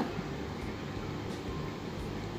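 Faint steady hiss with a low hum underneath and no distinct knocks or clatters.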